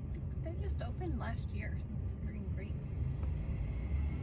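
Steady low rumble inside a car cabin, with a few faint murmured voice sounds over it.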